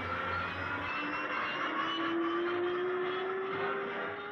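Cartoon sound effect of a small propeller airplane's engine running, with a steady whine that rises slowly in pitch.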